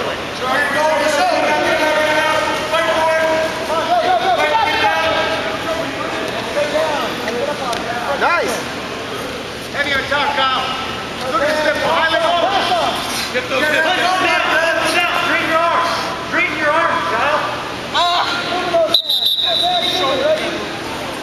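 Men shouting instructions and encouragement to wrestlers during a bout, voices overlapping in a gym.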